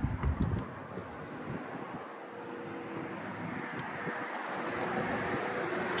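Steady outdoor background noise: an even hiss with a faint hum running under it, and a few light knocks in the first half-second.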